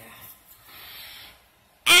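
A soft swish, about a second long, of a plastic toy hairbrush drawn through a doll's hair, then a child's loud cry of "Ow!" near the end.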